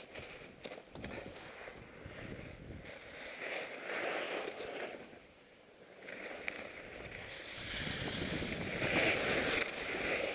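Skis hissing and scraping over chopped-up packed snow on a fast descent, mixed with wind noise on the microphone. The sound comes in swells, dropping away about halfway and loudest near the end.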